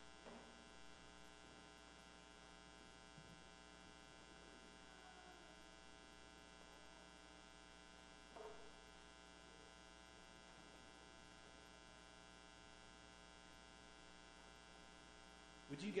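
Near silence filled by a faint, steady electrical mains hum, with a brief faint sound about halfway through.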